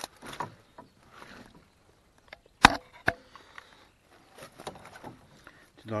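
Knocks on the wooden boards of a rowboat as a landing net holding a freshly caught, flapping fish is handled: one sharp knock about two and a half seconds in, a smaller one soon after, amid faint rustling of the net.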